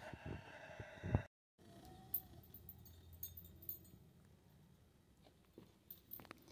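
Faint background noise with a few soft clicks. The sound drops out completely for a moment about a second in.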